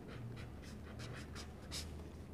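Black marker pen writing digits on paper: a run of short, faint pen strokes, one a little louder near the end.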